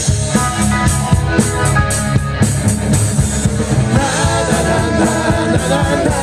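Live rock band playing loud, with electric guitar and drum kit. A stretch of held guitar/keyboard notes over the drums gives way to the male singer's vocal line coming back in about four seconds in.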